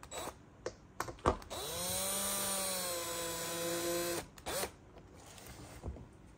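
Cordless drill-driver motor spinning up and running for about two and a half seconds, driving a screw into the mounting plate, with its pitch dipping slightly midway as it loads. It cuts off abruptly and then gives one brief second burst, after a few handling knocks at the start.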